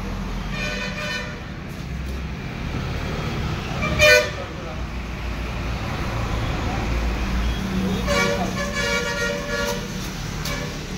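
Street traffic with vehicle horns over a steady low engine rumble, with one short loud honk about four seconds in and longer horn tones near the end.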